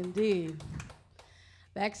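A woman's voice makes a short sound at the start, then a quiet pause with a few light clicks, and she begins talking near the end.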